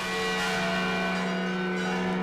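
Large church bell rung by hand, swung on its wooden yoke by ropes, its many-toned ring held steady and ringing on.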